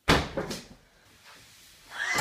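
A sudden loud bang at the very start, followed by a second, smaller knock about half a second later, then fading away.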